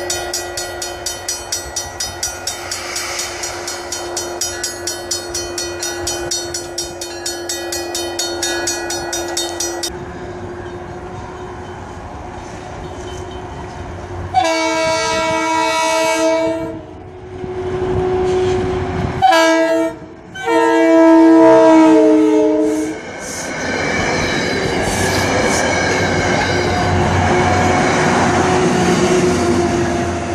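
A railroad crossing bell rings steadily as a push-pull commuter train approaches. Then, about halfway through, the cab car's air horn sounds the grade-crossing signal, two long blasts, a short and a long. The train then rumbles past with its BL20GH diesel locomotive pushing at the rear, the engine and wheel noise growing louder near the end.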